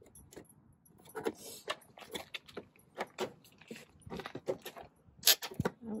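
A thin metal pick tool clicking and scraping against the steel rocker sill of a Jeep Grand Cherokee WJ as the plastic trim clips are pried out of their holes: a string of small, irregular metallic clicks, with a louder couple of clicks near the end.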